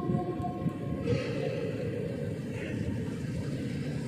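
The last held note of a chanted voice over the mosque's loudspeakers fades into the hall's echo during the first second. A steady low rumble of the large hall and seated congregation follows, until a new chanted phrase begins just after.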